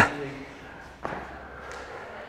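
Soft knocks of a man lying back onto an exercise mat on rubber gym flooring: a sharp one right at the start and a softer one about a second in, under faint voices.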